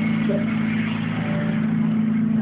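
Amplified band instruments holding a steady low chord, a drone of a few notes that does not change, over a loud hiss of room noise.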